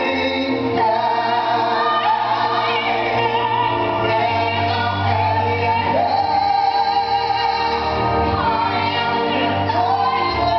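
A woman and a man singing a slow ballad duet into microphones, with long held notes and vibrato, over amplified accompaniment with a steady low bass.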